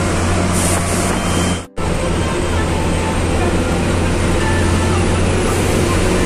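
Bus engine and road noise heard from inside the cabin of a moving bus: a steady, loud drone. It cuts out briefly just under two seconds in, then carries on as before.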